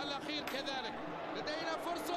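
Faint TV commentary from the football broadcast: a commentator talking steadily, well below the level of the reactors' voices.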